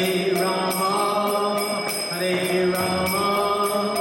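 Voices chanting a mantra in long, held, gliding notes, over a steady metallic clinking beat of about four strokes a second.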